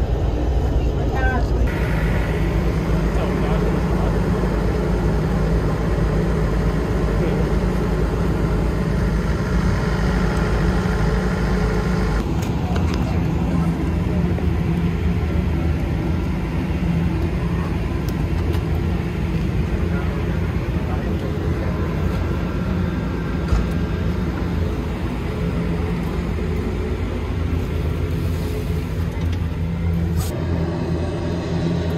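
Steady low engine rumble heard from inside an airport apron bus. About twelve seconds in it gives way abruptly to a steady low hum beside the parked airliner.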